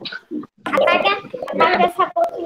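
A young child's voice vocalizing loudly without clear words, heard over a video call.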